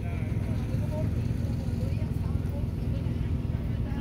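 Background chatter of distant voices over a steady low rumble.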